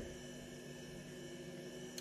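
Quiet room tone with a faint, steady electrical hum and hiss.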